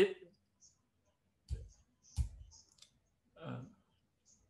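Two sharp clicks from a computer mouse, about a second and a half and two seconds in, each with a small thud.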